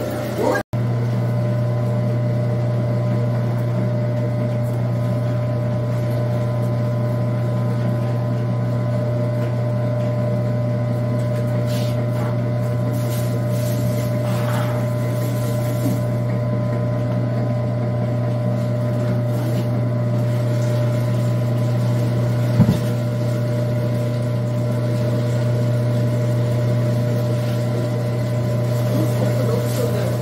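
Electric food grinder's motor running with a steady low hum as it grinds chopped radish and fruit for kimchi seasoning. A single short knock comes about two-thirds of the way through.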